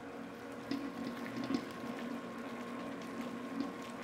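Stand mixer running at second speed with a steady motor hum, its flat beater churning wet, high-hydration ciabatta dough with faint wet squelching. The dough is still early in kneading, before the gluten has formed.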